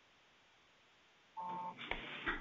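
Silence, then about one and a half seconds in a single short electronic beep, a steady tone lasting under half a second, like a telephone keypad tone on the call audio. Faint line noise follows.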